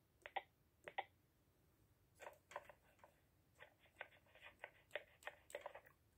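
Faint short beeps from a Luvicom Eclipse nurse call console's touchscreen keypad as room digits are tapped in, two of them within the first second, then a scatter of faint clicks as the speakerphone call to the room connects.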